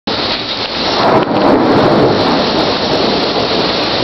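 Torrential rain driven by strong squall-line winds, a loud, steady rush that starts abruptly and holds throughout.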